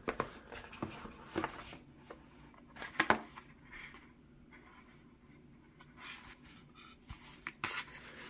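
Cardboard retail box being opened by hand: the lid is slid off and the inner packaging handled, giving a few soft scrapes and light taps of paperboard with quiet gaps between, the most distinct about three seconds in.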